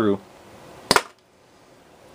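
A squeeze-powered toy dart shooter, a squishy rubber alligator, fires a foam dart through a chronograph: one short, sharp snap about a second in, at a muzzle speed of about 24 feet per second.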